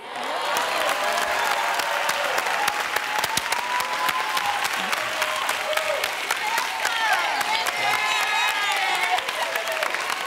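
Studio audience applauding, a dense steady clapping that starts suddenly, with voices calling out and whooping over it.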